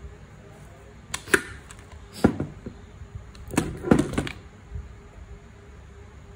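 Sharp clicks and knocks of a cast aluminium gear reduction housing and its small parts being handled and set down on a workbench during disassembly: a couple of clicks about a second in, one at two seconds, then a cluster of knocks near four seconds.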